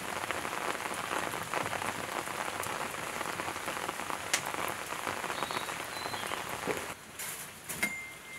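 Wood fire crackling densely in the brick firebox of a wood-fired kiln. It thins and drops away about seven seconds in.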